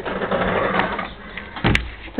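A mechanical noise for about a second, then a single sharp knock near the end.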